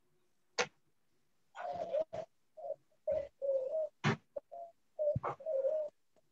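A bird cooing in a run of short, slightly wavering phrases, interspersed with a few sharp clicks.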